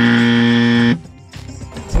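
A 'wrong answer' buzzer sound effect marking a mistake: one flat, harsh buzz lasting about a second, then cutting off abruptly.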